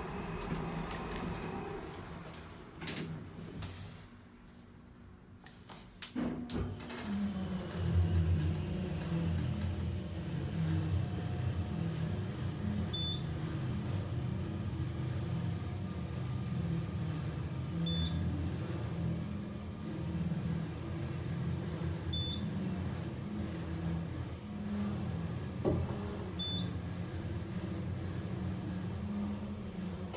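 Elevator car travelling upward on its winding drum machine: the drive motor's steady low hum and rumble starts about six seconds in. Over it there is a short high beep every four seconds or so.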